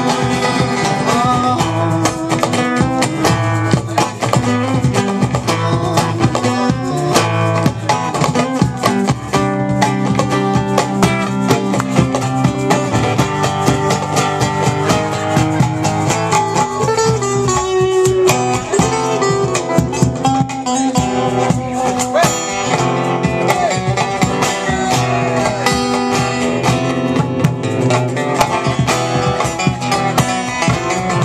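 Live band music: an acoustic guitar strummed quickly and steadily, with other instruments playing melody over it.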